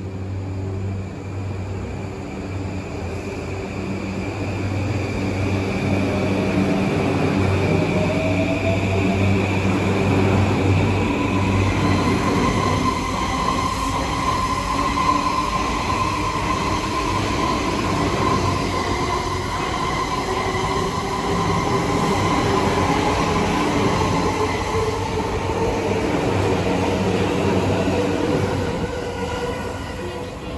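E235 series Yokosuka Line electric train pulling out of the station: its inverter-driven traction motors give whining tones that rise in pitch as it gathers speed, over the rumble of the wheels on the rails. The sound swells as the cars pass and fades near the end as the last car moves away.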